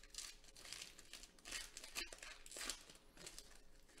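Plastic wrapper of a Panini Select basketball hobby pack being torn open by hand and crinkling, a string of faint rustles with a sharp snap about two seconds in.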